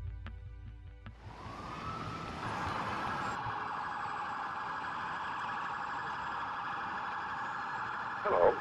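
Music stops about a second in and a siren starts, rising in pitch and then sounding steadily over a noisy street background.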